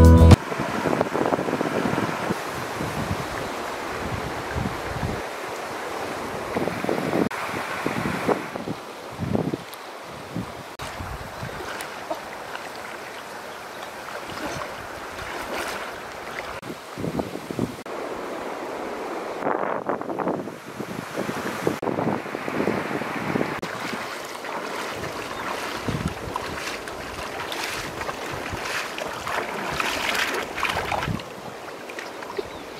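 A person wading through a shallow river: irregular splashes of legs moving through the water over a steady rush of water.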